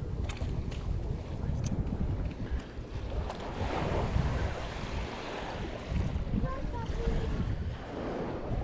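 Wind buffeting the microphone in a steady low rumble, over small waves washing onto a sandy beach, with one wash swelling about halfway through.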